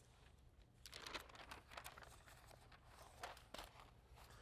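Faint handling noise: a run of soft rustles and light clicks starting about a second in, over quiet room hum.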